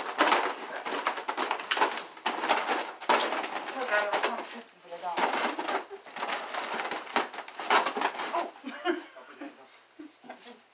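People laughing hard and squealing, with no words, loud throughout.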